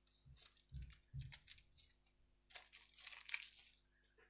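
Hobby knife trimming clear cellophane tape around a balsa tail fin, with a few soft knocks on the cutting mat in the first second or so. The trimmed-off tape then crinkles loudly as it is pulled away, from about two and a half seconds in until near the end.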